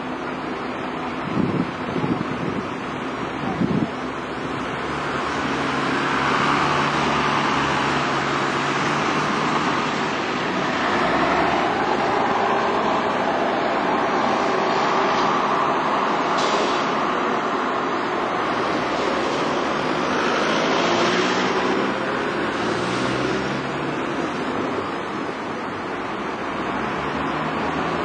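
Diesel bus engines running as buses move off and pass along a street, with general traffic noise. There are two short knocks in the first few seconds.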